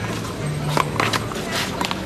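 A one-wall handball in play: about six sharp slaps and smacks in a second and a half as the small rubber ball is struck by hand and strikes the wall and pavement. A steady low hum runs underneath.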